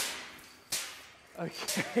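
A hiss dies away, then one sharp knock about 0.7 s in, from the handling of a large steel specimen tank and its hoisted lid.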